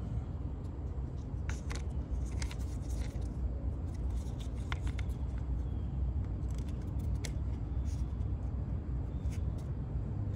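Small scattered plastic clicks and scrapes as the red plastic cover on the car battery's positive terminal is handled, over a steady low rumble.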